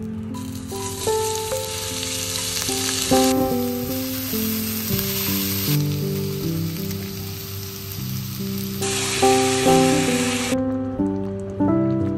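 Olive oil and diced carrot and celery sizzling in an enamelled cast-iron pot. The sizzle stops near the end, and soft background music of gentle stepped notes plays throughout.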